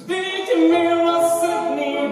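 Stage actors singing, with voices holding long sustained notes.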